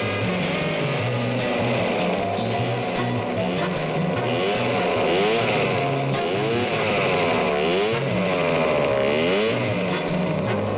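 Small lawnmower engines of miniature racing cars buzzing as they drive past, their pitch repeatedly rising and falling, over background music.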